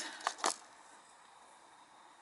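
Two short clicks of handling as a celestite crystal cluster is lifted from its cardboard box, the second louder, then faint room tone.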